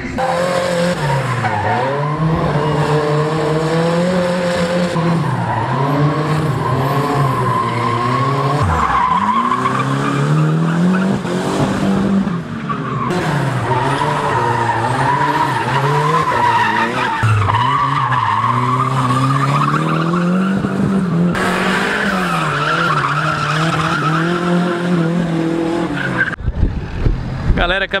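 Drift car engine revving hard, its pitch rising and falling again and again as the car slides, with tyres skidding and squealing on the asphalt.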